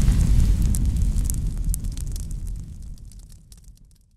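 Intro sound effect: the tail of a deep, explosion-like boom rumbling and fading away, with scattered fiery crackles, dying out just before the end.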